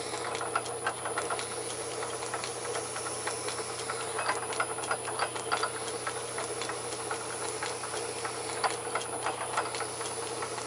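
A South Bend lathe's spindle running under its motor with a steady hum, while a lap turns against oil and abrasive grit in the MT3 headstock taper and gives off a stream of irregular clicks and scratches. The clicking grows busier about four seconds in.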